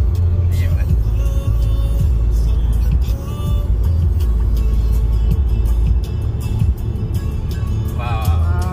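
Background music with a singing voice, a beat and a heavy bass line.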